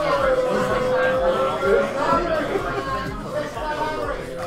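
Indistinct chatter of several voices, with no words clear enough to follow.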